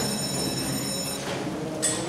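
Electric school bell ringing steadily, signalling the end of class, then cutting off about a second in. A short sharp click follows near the end.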